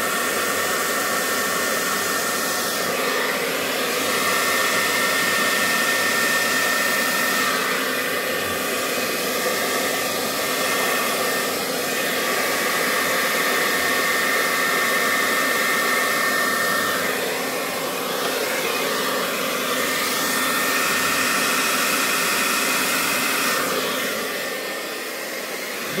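Hair dryer running with a steady whine, blowing air across wet acrylic paint to spread it in a blowout pour. Its tone shifts a little as it is moved over the canvas, and it gets quieter near the end.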